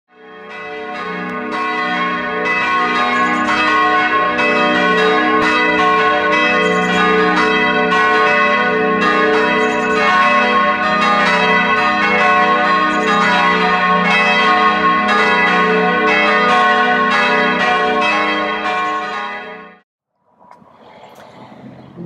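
Several church bells ringing together, a dense peal of overlapping strokes that swells up over the first couple of seconds and stops abruptly near the end, leaving only faint outdoor background.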